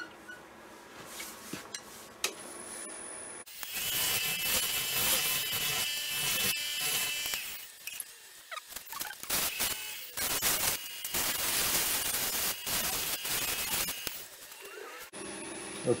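A wood lathe turning a soft sugar pine bowl, with a tool scraping against the spinning wood. The steady noise carries a faint high whine. It starts abruptly a few seconds in, dips briefly midway and stops shortly before the end.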